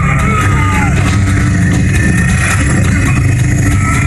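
Film fight sound of men straining and groaning as they grapple at close quarters, over a loud, steady low rumble.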